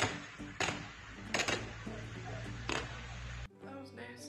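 Power lines arcing in a freezing-rain ice storm: four sharp bangs over a steady low rumble, which cuts off suddenly near the end.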